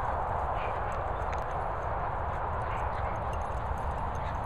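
Steady rumbling wind noise on a handheld microphone outdoors, with faint irregular footfalls on grass.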